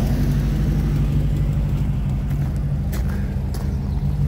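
VW T2 Bay Window camper's air-cooled flat-four engine idling steadily.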